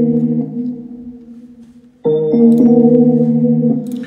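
A Keyscape virtual keyboard patch playing back the same held chord over and over: the chord fades away over the first two seconds, then is struck again about two seconds in and held until near the end.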